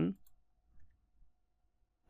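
Mostly near quiet with a faint steady hum and a few faint computer keyboard clicks, one just under a second in, as a short edit is typed.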